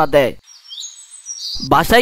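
Bird chirping: a few short, high, faint calls, some gliding in pitch, in a brief gap between spoken lines about half a second in.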